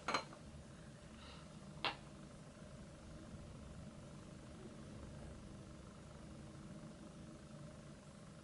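Quiet room tone with a steady low hum, broken by a single short, sharp click about two seconds in.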